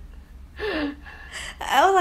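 A short breathy vocal sound, a gasp, with a falling voiced tone about half a second in. A person starts speaking near the end.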